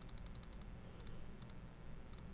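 Light computer mouse clicks: a quick run of several clicks in the first half second, then two more double clicks about a second and a second and a half in, over faint room hum.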